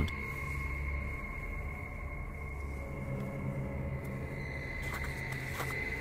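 Steady eerie background music: a sustained low drone under a held high tone, with no beat and no change.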